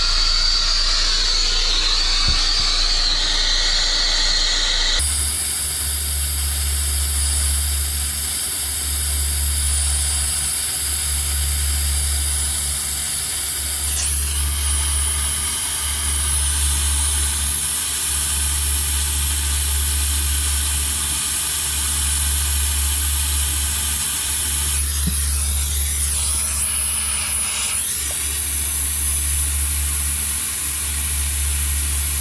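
Brazing torch flame burning steadily with a hiss while it heats copper refrigerant line joints for brazing. A low, slightly wavering rumble joins the hiss about five seconds in.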